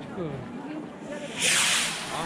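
A firework rocket launches with a loud hiss about one and a half seconds in, lasting about half a second, over people's voices chatting.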